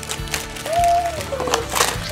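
Background music, with a single held note near the middle, over the crinkle and rustle of plastic-wrapped chocolate snack packets being pulled out of a cardboard box. The loudest rustle comes near the end.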